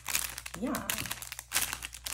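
A clear plastic bag of foil gel-polish soak-off wraps crinkling as it is handled, in several short bursts, the loudest near the end.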